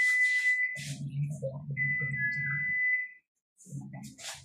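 A steady, high-pitched whistle-like tone sounds twice, each time for about a second. A low hum runs beneath it through the middle.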